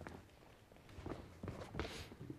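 Faint footsteps of a person walking quickly across the floor, a few soft separate steps.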